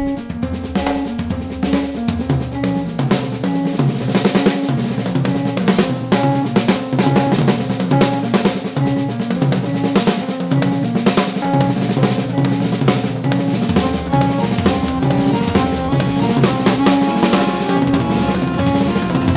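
A drum kit played fast and densely, with snare, bass drum and cymbal strikes, in an ethno-jazz trio. Underneath runs a repeating low pitched figure.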